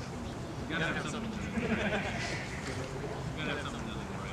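Soft, indistinct talking from a small group of people, in two stretches (about three-quarters of a second in to past two seconds, and briefly again near the end), over a steady low background rumble.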